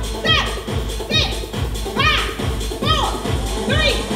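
Upbeat dance music for a Zumba workout: a steady fast beat with a short vocal phrase that rises and falls, repeating about once a second.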